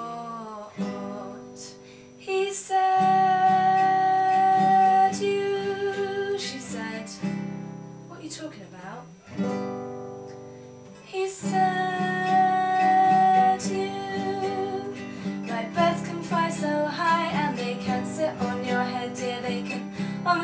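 Nylon-string classical guitar played through an instrumental passage of a song, turning to busier picked notes over the last few seconds. Twice a woman's voice holds a long wordless note over it.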